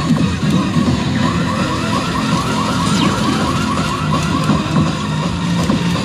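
Pachislot hall din: many slot machines' electronic music and sound effects at once, with a rapidly repeating chirping electronic tone, about six chirps a second, starting about a second in.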